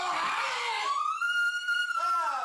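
A person screaming: a rough, ragged scream that turns about a second in into one long, high-pitched shriek.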